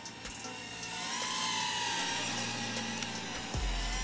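Electric motor whine: several steady high tones that drift slightly up and down in pitch, with a low rumble coming in near the end.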